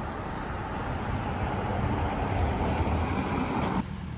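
Street traffic on a wet road: a steady rush of tyre noise that slowly swells as a vehicle draws near, cutting off suddenly just before the end.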